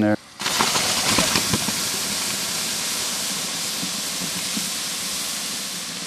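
A heated rock dropped into maple sap in a hollowed-log trough, hissing as the sap boils against it and throws up steam. The hiss starts suddenly, with a few crackles about a second in, then slowly fades.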